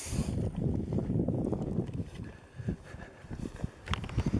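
Wind buffeting the microphone: an uneven low rumble that rises and falls, with a short tick near the end.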